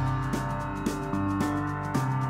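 Instrumental background music: a slow piece of sustained pitched notes, with a new note coming in about every half second.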